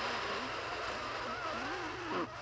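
Cartoon sound effects: a steady loud hiss, with wavering, sliding pitched tones coming in about halfway through.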